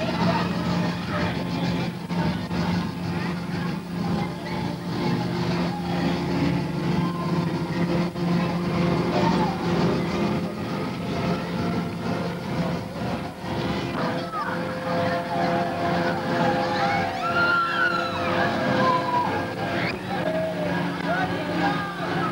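Amusement park ride machinery running with a steady hum, with voices over it that grow more prominent in the second half.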